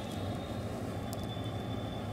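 A pause between sentences, filled only by a steady low background hum with faint hiss.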